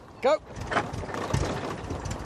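A Vauxhall Nova being bump-started: the car rolls on tarmac and its engine is turned over by the wheels and catches.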